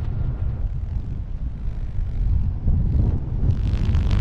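Wind buffeting the camera microphone in unpowered flight under a fabric wing: a steady low rumble, with a louder, hissier rush of air starting near the end as the pilot turns.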